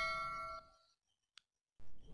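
A bell chime sound effect, the notification-bell ding that goes with a subscribe-button animation, ringing out and fading over the first half-second. Then dead silence for about a second before faint room noise returns near the end.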